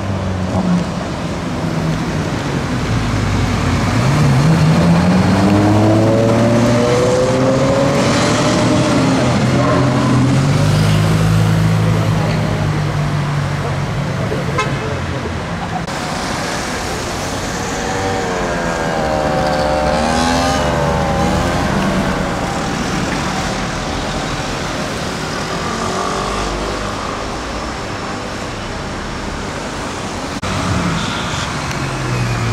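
Ferrari 812 Superfast's V12 accelerating hard, its pitch climbing steeply for several seconds before settling, over city traffic. Later a wavering tone rises and falls for a few seconds.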